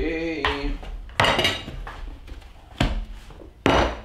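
Dishes being set down on a wooden table: a plate and a bowl knock against the wood and cutlery clinks. There are three sharp clatters, each with a short ring: about a second in, near three seconds, and near the end.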